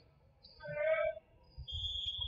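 Volleyball gym sounds: a short pitched call from a voice about half a second in, then a brief high steady whistle tone near the end over low murmur and thuds.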